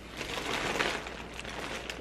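Soft rustling handling noise as a plastic tumbler is moved up close to the microphone, swelling about a quarter second in and fading near the end.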